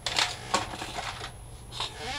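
A few light clicks and taps of small craft items being handled and set down on a cutting mat: one about a quarter second in, another at half a second, and one near the end.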